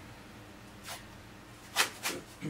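Sports tape being handled: a faint rustle about a second in, then one short, sharp rip near the end.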